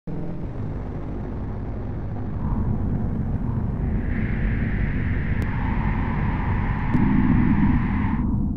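Deep, steady rumble of an intro sound effect, with a brighter, whooshing layer joining about halfway and swelling toward the end.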